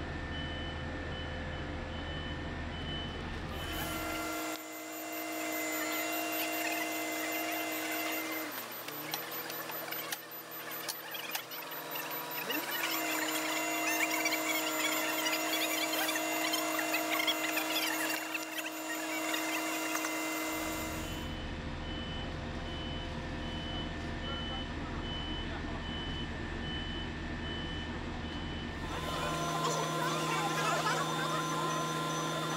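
Heavy-vehicle warning beeper sounding in a steady series of high beeps over running vehicle machinery. For a stretch in the middle the beeping stops, leaving a steady machine drone with two short slides in pitch, and then the beeps return.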